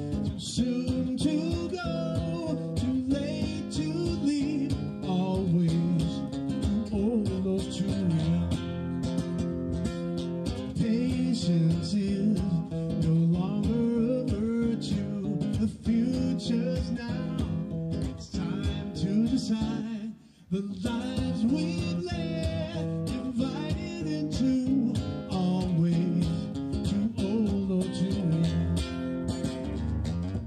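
A solo singer performing live over his own amplified nylon-string guitar, strummed and picked. There is a brief drop in the music about twenty seconds in.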